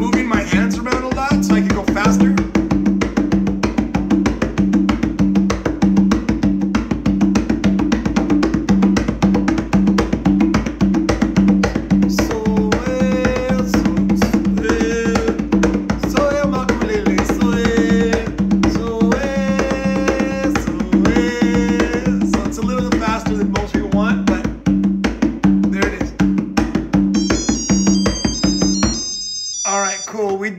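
Conga drum played by hand in a steady, fast rhythm of basic open and closed tones. The drumming stops near the end, and a high electronic beeping sounds.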